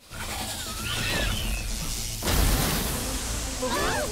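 Cartoon destruction sound effects: a low rumbling crash with a heavy boom about halfway through, a short shrill cry about a second in, and screaming starting near the end.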